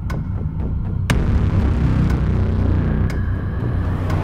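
Low, steady rumbling drone of a suspense trailer score, punctuated by three sharp hits: one at the start, one about a second in and one about three seconds in. A rising whoosh builds near the end.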